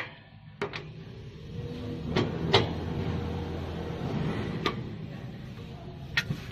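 A few sharp clicks and knocks as cable plugs are handled and pushed into the sockets on the rear panel of a plasma cutter power source, over a steady low rumble that swells in the middle.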